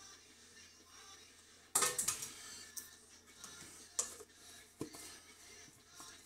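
A few sharp clinks and knocks of a measuring spoon and jars being handled on a kitchen counter. The loudest comes just under two seconds in and another at about four seconds, with faint room hush between.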